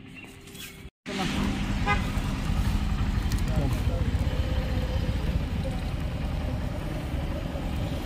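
Road traffic: a car driving past with a steady low rumble of engines and tyres, which starts suddenly about a second in.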